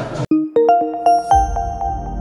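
Outro jingle music: a quick run of bell-like chime notes, each struck and ringing on, with a low bass swell coming in about halfway.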